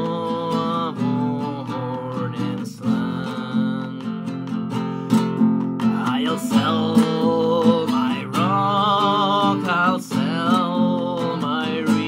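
Classical guitar strummed in steady chords, accompanying a voice singing long, wavering held notes, stronger in the second half.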